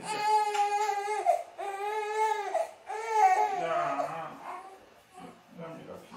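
Newborn baby crying: three long, high-pitched wails of about a second each, then dropping to quieter broken whimpers. The baby has woken in the night and cries as he is held upright against an adult's shoulder.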